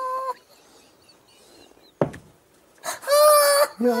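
A man's stifled, high-pitched squealing laughter, held in behind his hand: a squeal at the start and a second, longer one about three seconds in, with a near-quiet gap between. A sharp click comes at about two seconds.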